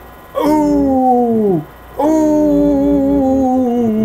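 A man humming two long, drawn-out notes. The second is longer than the first, and each slides down in pitch at its end.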